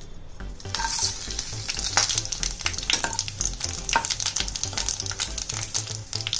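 Whole spices (cumin seeds, bay leaves, dried red chillies, cloves, cinnamon) sizzling in hot mustard oil in a kadhai, with many small pops, while a spatula stirs them.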